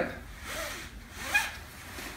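Faint rubbing and sliding of a fabric shoulder strap as it is adjusted on a bag.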